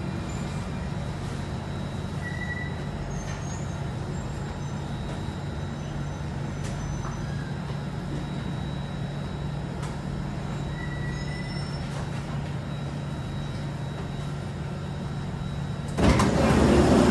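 Steady low running hum inside the cabin of an Alstom Metropolis C830 metro train as it brakes into a station and comes to a stop, with a constant faint high whine. Two brief faint chirps come about two seconds in and again near eleven seconds.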